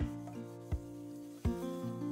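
Gentle plucked-string background music, a new note about every three-quarters of a second, over the soft rubbing of a sponge scrubbing a burned stainless-steel pot.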